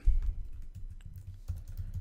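Computer keyboard typing: a quick, irregular run of key clicks as a word is typed.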